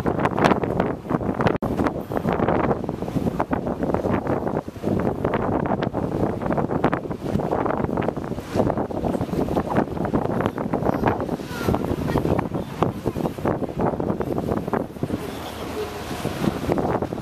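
Wind buffeting the microphone in uneven gusts, over the steady running noise of a river tour boat under way.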